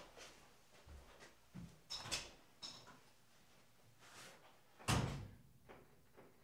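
Faint, scattered knocks and clicks, like something being handled or a door or drawer being moved. There is a small cluster of them about two seconds in, and the loudest, a sharp knock, comes about five seconds in.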